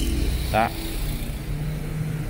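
Steady low rumble of motor vehicles, with a short spoken syllable about half a second in.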